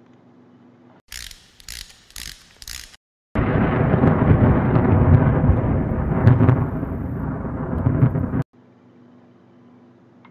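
Channel logo sound effect: four short noise bursts, then a loud, dense rumbling sound of about five seconds that cuts off suddenly.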